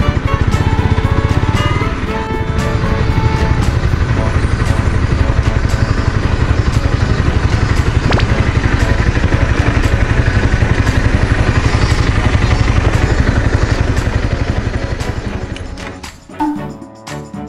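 Honda CBR250R's 250 cc single-cylinder engine running at low speed and idling, an even low pulsing, fading out near the end. Background music plays over it.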